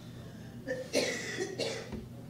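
A person coughing twice, a little under a second in and again about half a second later, over a low steady room hum.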